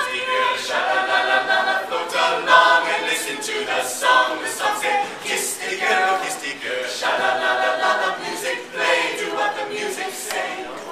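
A mixed-voice a cappella group singing a pop song in several-part harmony, with no instruments.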